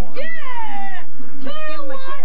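Two drawn-out meows: the first rises briefly and then slides down in pitch, and the second, starting about halfway in, stays level.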